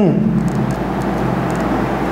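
A man's voice holding a long, steady low hum, like a drawn-out "hmmm" that slides down in pitch at the start, over a faint steady low background hum.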